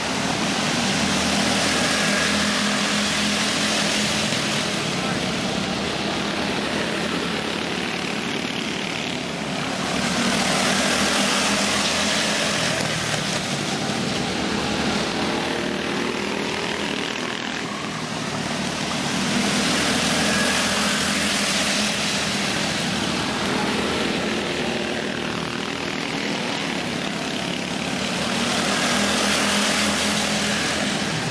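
A pack of dirt-track go-kart engines racing around a small oval, a steady buzzing that swells and fades about every nine seconds as the karts sweep past and away.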